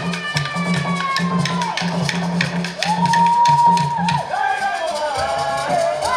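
Live Jerusarema dance music: tall hand drums beating a steady repeating pattern that drops away about four seconds in, with rattles shaken in rhythm and long, high held notes that slide in pitch above them.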